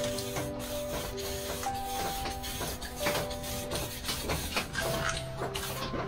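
Aerosol spray paint can hissing in repeated short bursts as dark paint is sprayed onto paper, over background music with long held notes.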